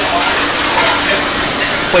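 Restaurant kitchen background noise: a steady hiss with a low hum underneath.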